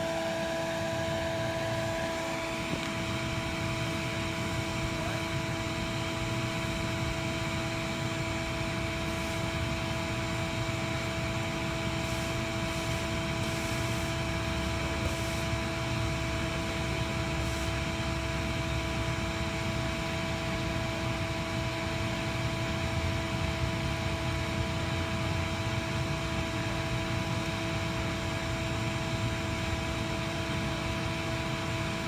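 A bee vacuum's motor runs steadily with a constant whine, sucking a honey bee swarm through a hose into a screened box.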